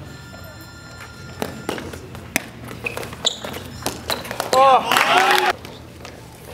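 A footbag being kicked back and forth over the net in a rally, heard as a run of sharp taps and thuds. About four and a half seconds in comes the loudest sound, a brief burst of high squeals gliding up and down, lasting about a second.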